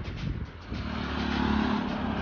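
A car's engine running as the car drives up, a steady low hum that grows gradually louder from about a third of the way in.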